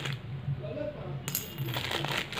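Plastic guitar bridge pins tumbling out of a bubble-lined foil mailer and clattering onto a concrete floor, with a sharper click about a second and a half in.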